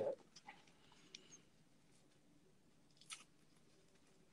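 Faint crinkling and rustling of a clear plastic bag being opened by hand, a few soft crackles with one slightly louder crackle about three seconds in.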